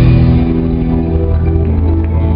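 Live band music through a hall PA: held chords and a steady bass note ring on with no drums, just after a sharp hit ends the previous full-band passage.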